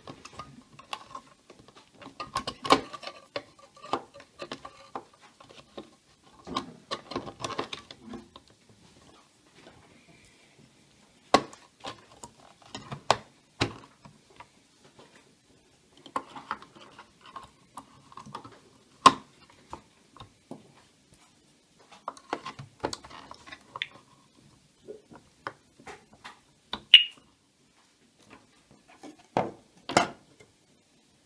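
D-size batteries being handled and pressed into the plastic battery holder of a Yale HSA 3500 alarm siren: irregular bursts of rattling and clicking, with several sharp snaps as the cells seat against the spring contacts. A brief high chirp sounds about three seconds before the end.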